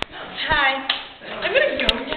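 A few irregular hand claps, the sharpest one near the end, among young voices.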